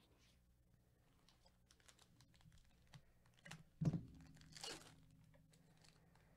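Foil trading-card pack wrapper crinkling under gloved hands, with light scattered clicks, then a short tearing rip as the pack is opened, a little after a brief knock on the table.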